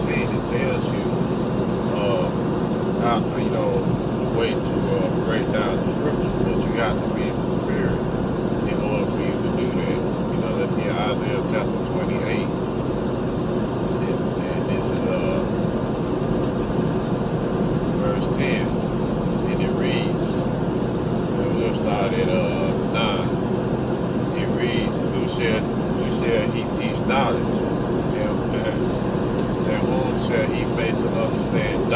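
Steady road and engine noise inside a moving car, heard from the cabin, with faint voice-like sounds now and then.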